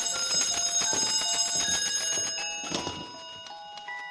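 A music box playing a tinkling melody of short, bell-like notes, working again after being shaken loose. It grows fainter toward the end.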